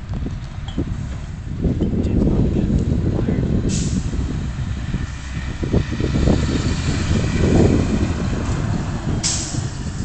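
A heavy vehicle's engine rumbling, with two sudden hisses of released air, about four seconds in and again near the end.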